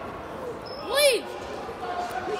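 A sneaker squeaking once on the hardwood gym floor about a second in, a short chirp that rises and falls in pitch, over a hum of chatter in the gym.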